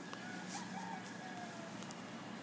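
A faint bird call, a few short pitched notes with slight rises and falls, from about half a second to a second and a half in, over a steady faint background hum.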